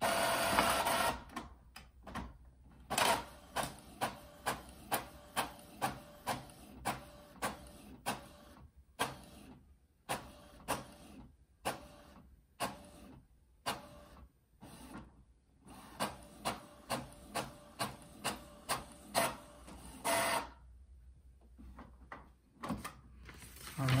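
Epson EcoTank ET-3850 inkjet printer printing a page. The paper feeds in with a loud whir at the start, then the print head sweeps back and forth, about two passes a second with a few slower stretches. A longer whir comes near the end as the page is fed out.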